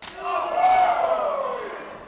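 A sharp slap of a knife-edge chop landing on a wrestler's bare chest, followed at once by the crowd's long "woo" that rises slightly and then falls in pitch over about a second and a half.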